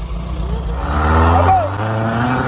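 Dune buggy engine running low, then revving up about a second in as the buggy sets off, with a brief shout over it.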